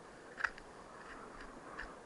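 Ice axe being planted into steep, firm snow: a sharp crunching strike about half a second in, a smaller one right after, and another short one near the end.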